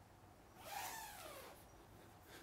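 A faint, brief rasp of nylon tent fabric, under a second long, starting about half a second in, as the tent's door is pushed open and handled.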